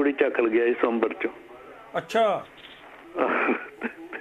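A caller's voice over a telephone line, speaking in short phrases with pauses between them, the sound thin and cut off at the top like a phone call.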